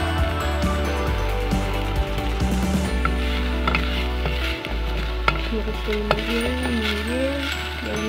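Background music with a steady bass line over the sizzle of a sofrito of onion, garlic and pepper frying in a pot, a utensil stirring it and scraping the pot with sharp clicks from about three seconds in.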